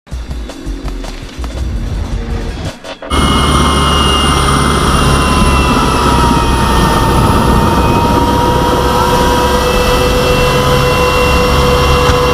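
A short music sting for about three seconds, then an abrupt cut to a PZL W-3A Sokół rescue helicopter running close by: steady rotor and twin-turbine engine noise with several high steady whining tones.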